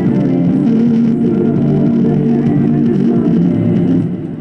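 Music played at maximum volume through a Bose SoundLink Mini Bluetooth speaker with its grille off, its exposed drivers carrying a dense, steady mix with strong bass.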